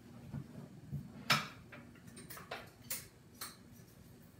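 About half a dozen sharp clicks and light taps, the loudest about a second in. They come from a metal espresso coffee tin and coffee beans being handled on a granite countertop.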